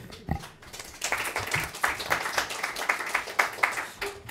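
Audience and panel applauding, starting about a second in as a dense crackle of many hands clapping.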